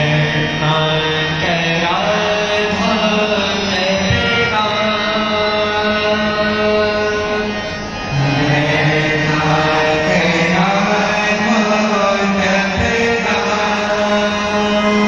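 Devotional chant-like singing over a harmonium's long held notes, with a brief drop in loudness shortly before the middle.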